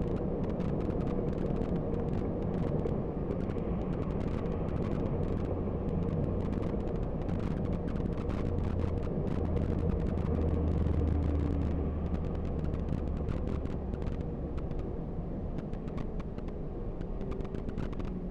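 Bus engine and tyre noise heard from inside the cabin: a steady low drone that swells in the middle and eases off near the end, with frequent small rattling clicks.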